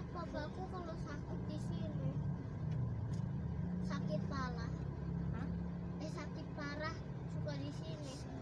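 Steady low engine and road rumble heard from inside a car moving slowly in heavy traffic, a little stronger through the middle, with voices talking over it.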